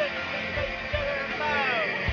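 Children's high voices calling out over the steady rush of a shallow, fast-flowing river.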